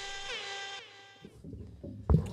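A single pitched tone, rich in overtones and wavering with quick downward dips, from a produced segment jingle or sound effect. It fades out about a second in.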